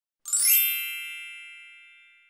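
A single bright, shimmering chime, the sound effect of a studio's intro logo. It is struck about a quarter second in and rings down slowly.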